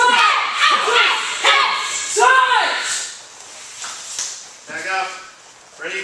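Martial-arts students shouting short, loud wordless yells (kiai) as they execute a bear-hug defence technique, a string of them in the first couple of seconds, then quieter voices near the end, echoing in a large hall.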